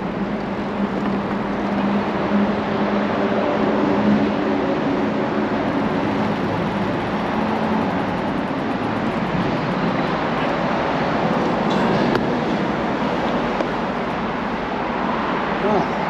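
Steady roar of road traffic, with a low hum through the first half.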